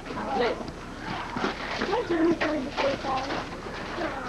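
Indistinct talking of children and adults, several voices overlapping with short pauses.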